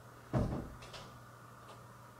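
A single dull thump about a third of a second in, dying away within about half a second.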